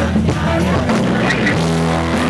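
Loud live band music: bass and drums, with held chords coming in about halfway through, most likely distorted electric guitar.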